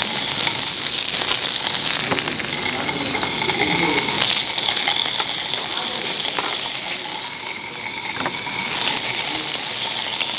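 Marinated beef and pork belly sizzling steadily in hot oil on a Korean barbecue grill pan, with a few light clicks of metal tongs. The sizzle eases briefly about seven seconds in, then swells again.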